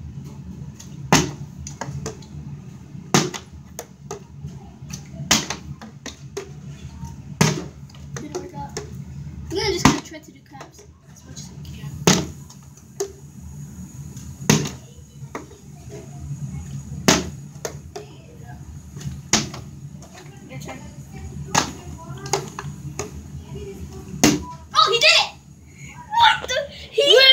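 A partly filled plastic water bottle being flipped and landing on the floor over and over, a sharp knock about every two seconds, ten or so in all, with quiet voices between the landings.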